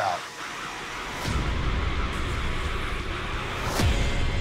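Edited-in sound effects: a deep, steady rumble swells in about a second in, and a whoosh falling steeply in pitch comes near the end.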